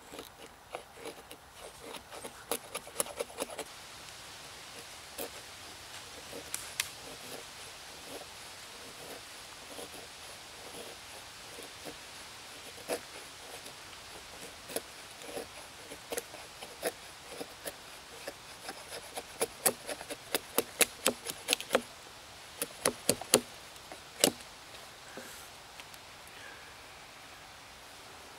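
Gransfors Bruks Outdoor Axe, held by the head, shaving curls off a split stick of wood: irregular runs of short scraping cuts, with a busy run in the first few seconds and a quick dense flurry about two-thirds of the way through.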